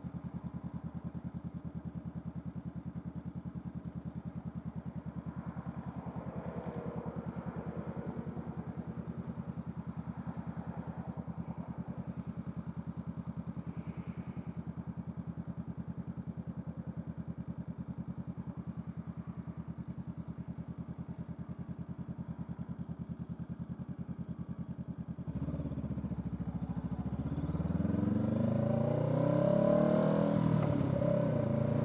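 Honda Rebel 500's parallel-twin engine idling steadily with an even pulse. Near the end it is revved and the bike pulls away, its pitch rising as it accelerates and getting louder.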